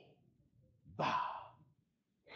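A man voicing the syllable "vav" as one breathy exhale into a microphone about a second in, like the sound of breathing. It is the third letter of the divine name YHWH, spoken as a breath.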